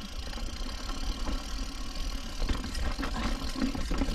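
Mountain bike rolling down a rough, rocky trail: a steady low rumble with scattered clicks and rattles of the bike over the ground.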